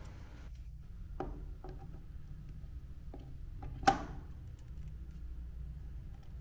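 Light clicks and taps of DDR4 RAM sticks being handled and lined up over a motherboard's memory slots, with one sharper click about four seconds in, over a faint low hum.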